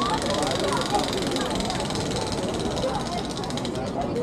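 Outdoor crowd chatter: many overlapping voices of passers-by. Underneath, a steady rapid pulsing sound fades out about three and a half seconds in.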